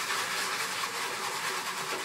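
Wire whisk stirring brine in a clear plastic tub, a steady noisy swishing of liquid.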